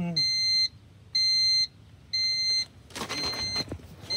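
Electronic alarm beeping a steady high-pitched tone, about one half-second beep each second, with rustling handling noise around three seconds in.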